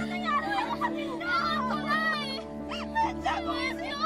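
Several children's high voices calling and chattering over each other, over background music with long held notes.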